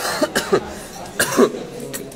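A man coughing three times into his fist, short harsh coughs spaced out over a second and a half.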